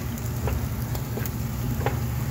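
Chicken drumsticks sizzling in hot oil in a frying pan, with a few faint pops scattered through and a steady low hum underneath.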